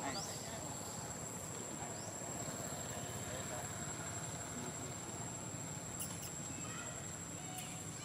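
A steady, high-pitched insect drone, one unbroken tone, over a low outdoor background hiss.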